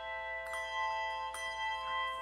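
Handbell choir playing a slow hymn: chords of struck bells ring on and overlap, with new chords struck about half a second in, again past the middle, and near the end.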